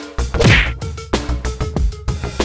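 Background music with a steady drum beat, and a loud swooshing hit sound effect about half a second in.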